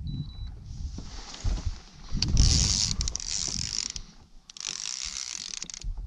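Fishing reel working while a hooked musky is fought: a mechanical whir in two spells, about three seconds and then just over a second, with a few low knocks.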